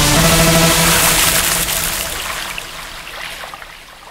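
The tail of a radio jingle: a held musical chord over a rushing water sound, fading out steadily over a few seconds.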